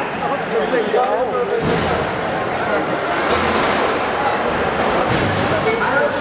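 Crowd of spectators talking and shouting in a large hall, giving way to a dense, steady wash of crowd noise, with a couple of sharp knocks about three and five seconds in.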